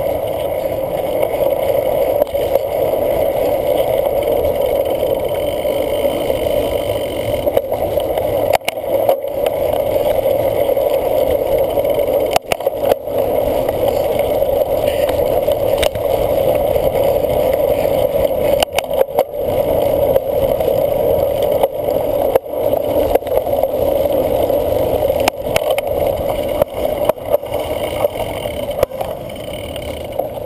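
Cyclocross bike ridden fast over rough dirt and grass, heard through a camera mounted on the bike: a steady rushing noise of wind and tyres broken by frequent sharp knocks and rattles as the bike jolts over bumps.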